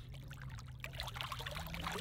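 Water splashing and trickling at the side of a boat as a largemouth bass held in the water is revived and released, kicking free. A faint low hum slowly rises in pitch underneath.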